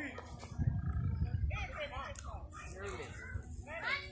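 People's voices calling out, not close to the microphone, untranscribed. A low rumble sits under them for about a second, starting about half a second in.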